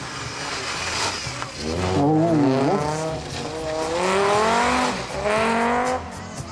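Audi coupé rally car's engine revving hard as the car accelerates out of a turn, its pitch climbing in several rising runs with short drops between them.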